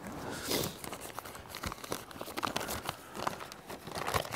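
A folded paper letter being unfolded and handled, rustling and crinkling in irregular quick crackles.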